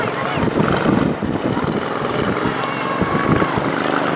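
Wind noise on the microphone with scattered voices calling across a soccer field, one held shout about three seconds in.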